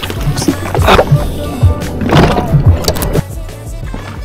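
Background music, with a few loud irregular knocks and bumps in the first three seconds.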